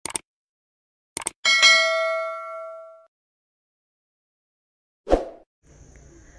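Subscribe-button sound effect: a couple of quick mouse clicks, then a bright bell ding that rings out for about a second and a half. A short thump comes near the end.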